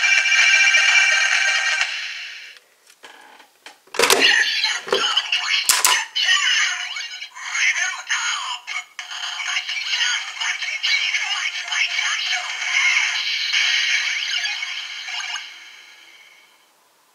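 Kamen Rider Ex-Aid DX Gamer Driver toy belt with the Mighty Action X Gashat: its electronic standby tune plays through the belt's small speaker, then a few sharp plastic clacks between about four and six seconds in as the lever is flipped open. The belt then plays its recorded transformation call and jingle ("Gachaan! Level up! Mighty Jump! Mighty Kick! Mighty Mighty Action X!"), which stops shortly before the end.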